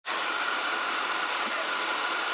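Handheld hair dryer running steadily: an even rush of blown air with a constant whine through it.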